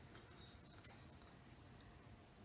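Near silence, with a few faint light ticks and rustles from capers being dropped by hand onto salmon in a foil-lined baking dish.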